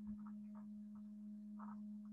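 Faint steady low hum, a single held tone with a weaker higher overtone, with a few faint soft ticks.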